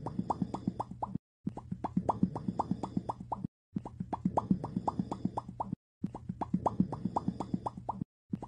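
Rapid mouth-pop sound effect of the Pop Cat meme, a quick steady run of pops, about six a second. It comes in runs of about two seconds, broken by short silent gaps, over a faint background hum.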